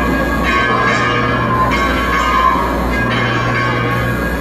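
Bells chiming in a repeating pattern, a fresh peal about every second and a bit, over a steady low drone, as in a Christmas show's bell-laden soundtrack.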